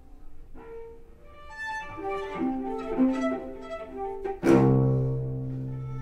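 Solo cello played with the bow: a quiet opening, then a run of short, quick notes that grows louder. About four and a half seconds in comes a sudden, hard-attacked low note that is held and slowly fades.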